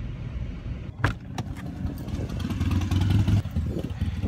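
Low road noise inside a moving car, broken about a second in by a sharp click. Scattered clicks and knocks of the recording phone being handled follow, over a low rumble that grows louder in the middle.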